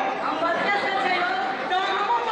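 Speech only: several people talking at once.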